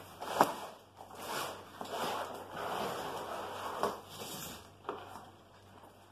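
An antenna in stiff plastic packaging pulled out of a long cardboard shipping box: cardboard and plastic scraping and rustling, with a sharp knock about half a second in.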